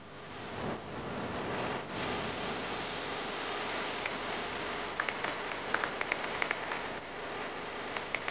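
Steady hiss of noise, like static or rain, with a quick run of sharp clicks about five seconds in.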